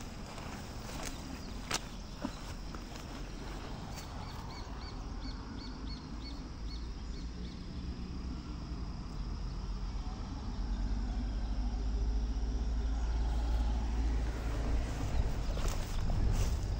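Outdoor field ambience: a low rumble that grows louder in the second half, a few sharp clicks in the first two seconds, and a run of short high chirps from about four to eight seconds in.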